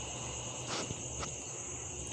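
Faint steady background with a constant high-pitched drone, like distant insects, and two faint clicks about a second in.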